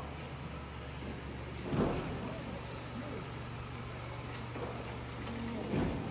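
Street sound dominated by a vehicle engine idling steadily, a low even hum, with voices in the background. Two brief louder noises stand out, about two seconds in and near the end.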